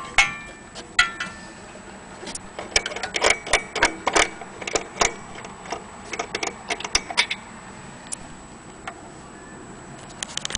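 An antique Vienna wall clock being handled: two sharp knocks from its brass weight shells about a second apart, each with a short metallic ring, then an uneven run of clicks and knocks from the case and dial.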